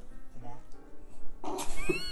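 An animal's high-pitched cry, rising then falling in pitch, near the end, over music and talk.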